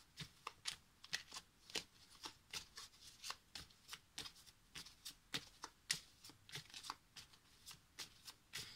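A deck of oracle cards shuffled by hand, packets slid and dropped from one hand to the other: a faint, irregular run of quick card clicks and slaps, two to four a second.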